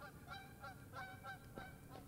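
Faint, distant Canada geese honking: a flock calling over and over, several short calls a second.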